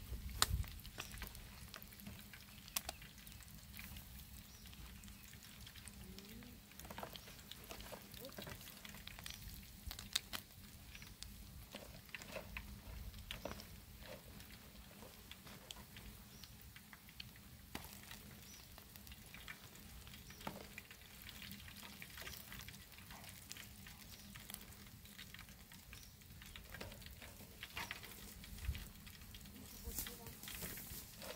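Pieces of fish frying in oil in a pan on a portable gas camping stove: a faint sizzle with scattered crackles, and a metal spoon scraping and clinking in the pan as the pieces are lifted out. The crackling has mostly died down, the sign that the fish is fried through.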